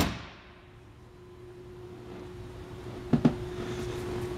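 A fiberglass anchor-locker hatch lid on the bow shuts with a sharp thump right at the start, then low room tone with a steady hum, and two light knocks about three seconds in.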